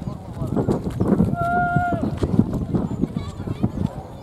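A group of people talking and calling to each other at a distance, with one long held call about a second and a half in.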